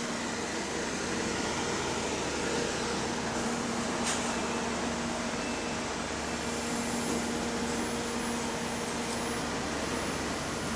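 Double-decker bus engines running at a bus stop as a New Routemaster pulls in: a steady drone. There is a single sharp click about four seconds in, and a faint high whine joins from about six and a half seconds.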